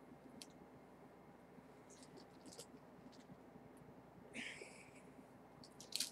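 Faint clicks of an invisible zipper and its fabric being worked by hand, with one short rasp about four and a half seconds in as the zipper slider is tugged; otherwise near silence.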